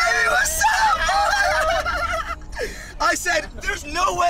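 People's voices shouting and laughing, high-pitched and wavering, with no clear words. A long stretch of calling is followed by a short break and then several short calls near the end.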